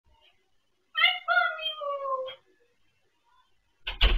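A cat meowing: one drawn-out mew of about a second and a half, sliding slowly down in pitch. A sudden thump comes near the end.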